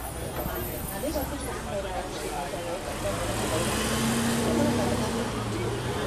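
Street traffic dominated by a double-decker bus's diesel engine running as the bus drives past close by. A steady engine hum is loudest a few seconds in, with people's voices in the background.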